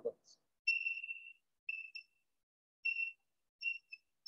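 Chalk squeaking against a chalkboard as words are written: a string of about six short, high-pitched squeaks, the first about half a second long and the rest brief.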